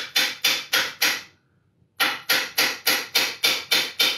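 Flat-faced hammer tapping in a quick steady rhythm, about four blows a second, around the edge of a metal front sight block on a rifle barrel. There is a short pause just after a second in, then the tapping starts again. The blows squash the block out so that it stretches to fit the barrel.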